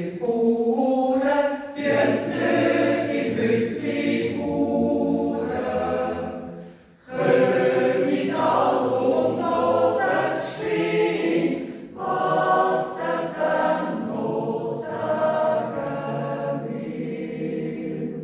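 Mixed Swiss yodel choir of men and women singing a cappella in several voice parts, with a short break between phrases about seven seconds in.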